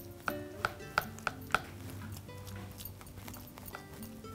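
A metal spoon tapping sharply on a ceramic dish about five times in the first second and a half, as a thick sweet mixture is pressed and spread flat in it. Background music with held notes runs underneath.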